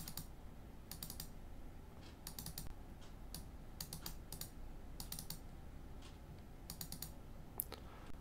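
Faint computer mouse clicks in quick groups of two or three, repeated about nine times: double-clicking to delete pieces of waste in CAD software.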